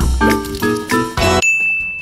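Short animated-intro jingle: a quick run of bright musical notes over a low bass, then a single high ding held for about half a second.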